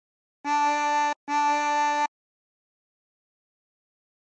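24-hole tremolo harmonica in C playing two draw notes on hole 2, both a D, each a little under a second long with a brief break between them.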